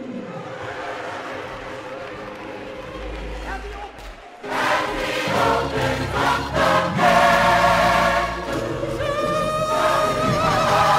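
Large gospel mass choir singing, softly at first, then swelling louder and fuller after a brief dip about four seconds in.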